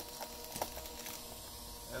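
Low steady hum with a couple of faint clicks from parts being handled, as the fairing's rubber nuts are slid into the lower brackets of its mount.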